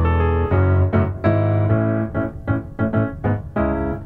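Piano chords played on a digital piano. Full chords with a deep bass are held for the first couple of seconds, then shorter notes follow in a choppier rhythm.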